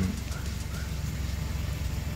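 Suzuki Swift engine idling: a steady low hum.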